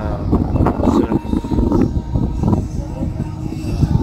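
A man singing karaoke to Filipino music somewhere in the city below, over a steady low rumble of city noise.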